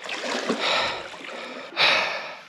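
Water splashing and sloshing as a big Murray cod kicks its tail and swims off when it is released into the river. It stops abruptly near the end and is followed by a short burst of noise.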